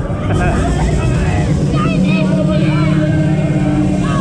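Loud fairground ride soundtrack: a voice over the public-address system mixed with music, over the running noise of the ride, with a steady low hum coming in about halfway.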